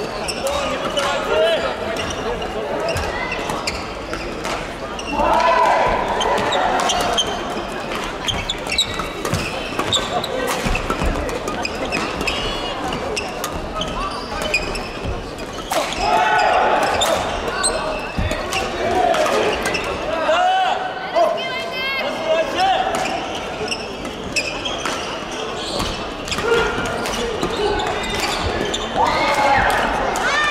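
Busy badminton hall: many people's voices and shouts from players across several courts, with frequent sharp clicks of rackets hitting shuttlecocks, all echoing in the large hall.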